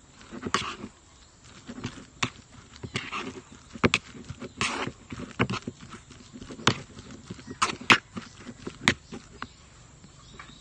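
A plastic spoon stirring tuna filling in a plastic bowl: irregular clicks and knocks of the spoon against the bowl, with short scraping strokes between them.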